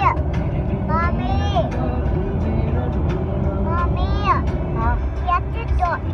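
Steady low rumble of car road noise heard from inside the cabin, with short high-pitched voice sounds breaking in over it several times.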